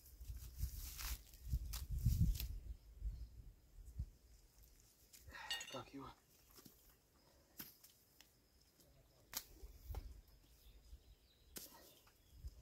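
Faint low rumble and scattered small clicks as a rope line with a grappling hook is coiled and hauled in from shallow water.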